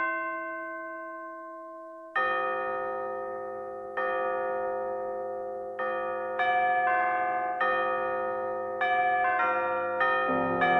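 KAT MalletKAT 8.5 electronic mallet controller struck with mallets, sounding a bell-like sampled voice from its GigCat 2 module: one long note fades over the first two seconds, then chords ring and fade, a new one every second or so, coming quicker near the end.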